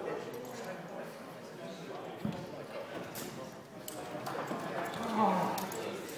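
Indistinct chatter of people in the background, with a single knock about two seconds in.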